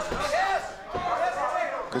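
Untranscribed shouting from cageside voices during an MMA exchange, with a sharp smack of a glove strike about a second in.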